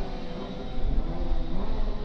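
Two street-legal drag cars' engines heard far off as they run out the end of the strip, a steady distant drone that grows a little louder about a second in.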